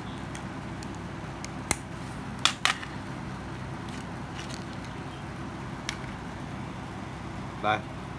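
Sharp handling clicks from the plastic butt cap and metal-ringed sections of a telescopic carbon fishing rod as the cap is worked off, about three clicks within the first three seconds and one faint one later, over a steady low background hum.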